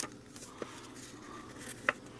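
Hands handling and opening a paper instruction booklet: faint paper rustle with a few light taps, the sharpest a brief tick near the end.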